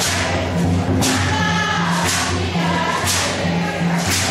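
West African hand-drum music: a djembe and tall standing drums struck about once a second under voices singing long held notes.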